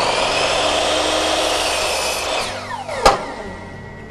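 Makita mitre saw running and cutting through a hardwood architrave board. About two seconds in the motor is released and winds down with a falling whine, and a sharp knock follows.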